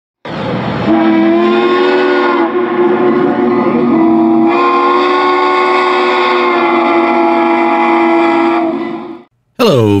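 Locomotive chime steam whistle in one long blast of about nine seconds, a steady chord over a hiss of steam, its tone shifting a couple of times before it fades and stops.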